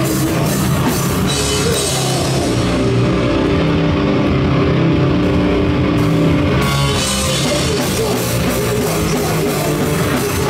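Hardcore band playing live: distorted electric guitars, bass and drum kit through amplifiers. About two and a half seconds in the cymbals drop out and the guitars hold sustained chords for about four seconds, then the drums crash back in.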